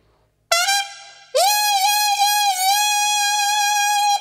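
Solo trumpet playing blues: after a brief silence, a short note, then a long note scooped up into pitch and held steady.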